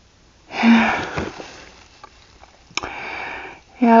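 A person breathing close to the microphone: a loud, breathy exhale with a short voiced start about half a second in, then a quieter drawn breath through the nose nearly a second long near the end.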